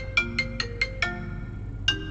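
Mobile phone ringtone: a quick run of bright, marimba-like notes, about five a second, then a short pause and one more note near the end.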